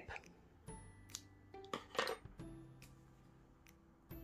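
Faint background music with soft held notes, and a series of small sharp clicks over the first few seconds from scissors snipping crochet yarn.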